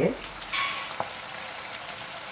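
Sliced potatoes frying in a deep pan of bubbling oil, nearly cooked for a tortilla de patatas: a steady sizzle, louder for a moment about half a second in, with a light click about a second in.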